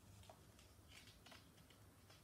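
Near silence: room tone with a few faint, light ticks from a hand at the corner of a picture book's page.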